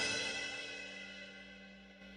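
The final chord of a Yamaha arranger keyboard style ringing out and dying away, with a cymbal decaying along with it. It fades steadily to near silence about a second and a half in.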